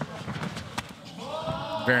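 Ground-and-pound punches from a heavyweight MMA fighter landing on his opponent on the mat: several dull thuds in the first second. They are followed by a man's drawn-out vocal exclamation that rises and falls.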